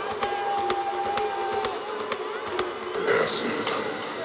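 Electronic dance music from a DJ set in a breakdown with the bass and kick dropped out: quick even ticks and a long held synth tone, with a hiss swelling up about three seconds in.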